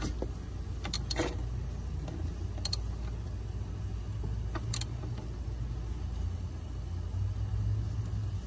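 A handful of sharp, separate metallic clicks and taps from a hand ratchet and socket being worked on the battery positive terminal nut, over a steady low hum.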